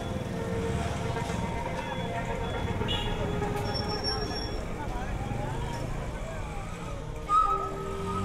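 Street ambience of motor traffic, with people talking in the background.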